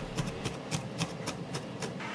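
A cleaver chopping garlic into coarse grains on a wooden chopping board: a steady run of sharp chops, about three to four a second.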